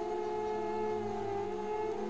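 Background music bed: a steady, sustained drone of several held tones, unchanging throughout.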